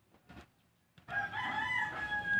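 A rooster crowing: one long held call that starts about a second in.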